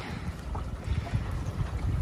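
Wind buffeting the microphone over river water washing against a small boat: an uneven low rumble with a soft hiss.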